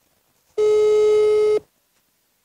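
Mobile phone ringback tone on an outgoing call: one steady beep about a second long, the sign that the call is ringing at the other end.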